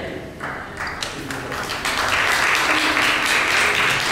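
Congregation applauding in a large hall. The clapping builds about a second in and is full and steady for the second half.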